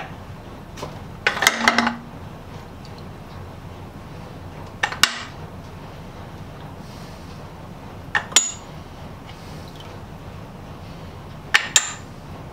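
Small metal saw-handle parts clinking as they are handled and dropped into PVC soaking tubes. There are four short clatters, about three seconds apart, over a steady low hum.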